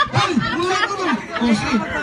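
Several people's voices talking over one another, with the odd chuckle.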